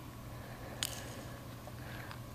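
A single sharp click about a second in, from the clip of a Kbands leg resistance band being unfastened, over a low steady hum.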